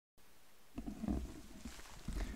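Low, irregular bumps and rumbles of handling noise close to the microphone, with faint rustling, starting under a second in after a moment of faint hiss.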